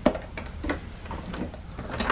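Plastic housing of a Wertheim PB18 vacuum powerhead being pressed down by hand onto its base to seat it: a sharp click at the start, then a few fainter clicks and knocks.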